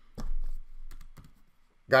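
Typing on a computer keyboard: a handful of separate keystrokes, the first one loudest, as a short label is typed and corrected.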